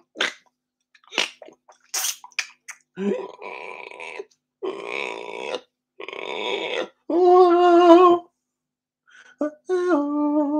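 Unaccompanied male vocal improvisation using extended voice sounds. For the first few seconds there are short, breathy hissing mouth sounds. Three rough, throaty voiced stretches follow, then a held sung note of about a second, about seven seconds in.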